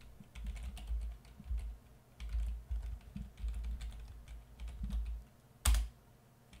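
Typing on a computer keyboard: an uneven run of key clicks over dull low thuds from the desk, with one sharper, louder click near the end.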